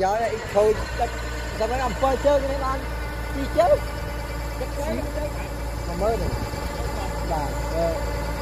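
Kubota DC-105X rice combine harvester's diesel engine running steadily while it unloads grain through its raised auger into a truck, with people talking over the drone.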